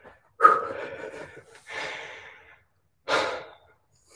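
A man breathing hard, out of breath from exercise: three heavy breaths, the first the loudest.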